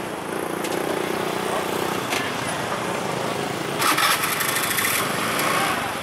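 Small motorcycle engine running as motorbikes ride through a busy street market, over the chatter of the crowd. A louder, harsher burst of engine noise comes in from about four seconds in.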